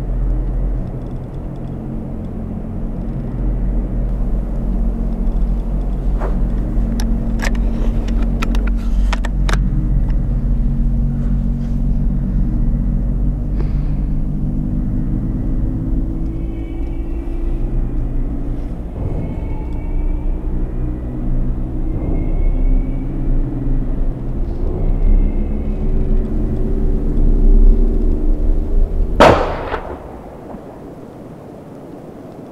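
A low rumbling drone of several held low tones that slowly swells in loudness, broken near the end by a single sharp rifle shot from a scoped hunting rifle, after which the drone cuts away.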